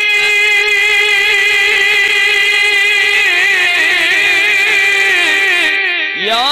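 A man singing a naat unaccompanied into a microphone, holding one long note that wavers through ornaments in its second half and breaks off just before the end.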